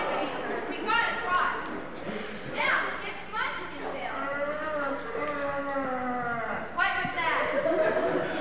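Actors' voices from the stage, the words unclear, echoing in a large hall, with one long drawn-out falling call in the middle.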